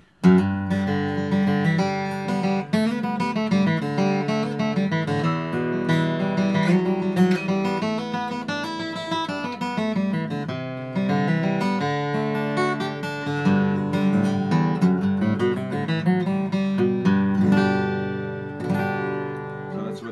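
Tahoe Guitar Co dreadnought acoustic guitar with a red spruce top and Indian rosewood back and sides, strummed and picked with a flatpick in a run of chords and single-note lines. It is a brand-new guitar with about half an hour of playing time, not yet opened up.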